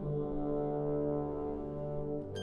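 Concert band holding a low, sustained chord, with the low brass to the fore; the chord shifts to a new one right at the start and is held steady.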